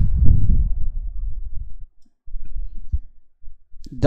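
Computer keyboard typing: a few soft, scattered key clicks in the second half. Before them, for about the first two seconds, a louder low muffled rumble of noise on the microphone.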